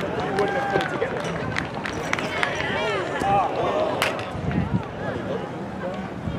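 Several people talking at once close by, over a steady background of outdoor crowd noise, with a few sharp clicks.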